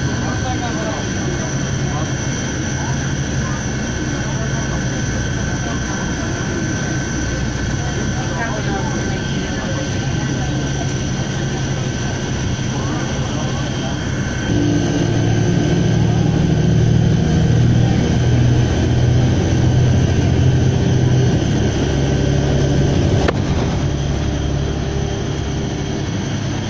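A steady engine drone with a constant high whine, getting louder with a deeper throb about halfway through; faint voices in the first half.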